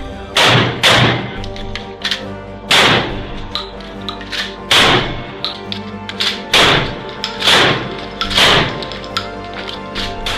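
Pump-action shotgun shots, about seven loud blasts spaced one to two seconds apart, over background music.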